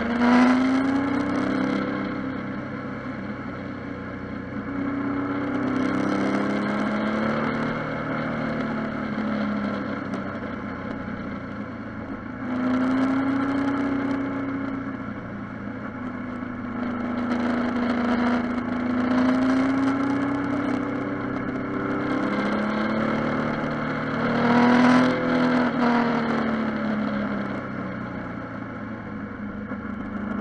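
Triumph Tiger Sport's three-cylinder engine, heard from on board while riding, revving up and easing off again and again, its pitch rising and falling several times as it accelerates and slows.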